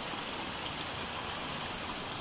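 A small mountain creek running over rocks, a steady, even rush of water.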